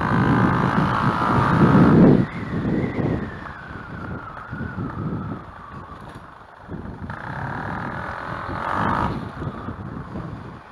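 Tuned Gilera DNA 180 scooter engine pulling hard, then its whine falling steadily as the throttle eases off, before it builds again around seven to nine seconds in. Wind rushes over the microphone throughout.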